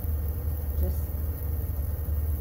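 Steady low hum of a countertop induction cooktop running under a wok, the loudest sound throughout, with one short spoken word about a second in.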